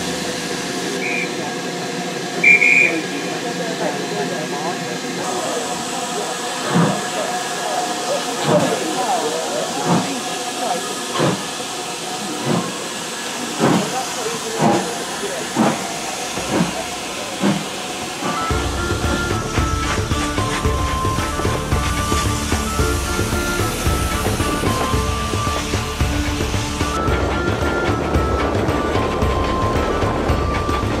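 Steam locomotive, a BR Standard Class 5, starting a train: two short high whistle notes, then exhaust chuffs that begin slowly about seven seconds in and come steadily quicker as it gets away. From about two-thirds through, wind buffets the microphone and music takes over.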